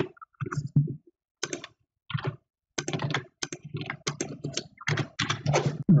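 Typing on a computer keyboard: irregular bursts of keystrokes with short pauses between them.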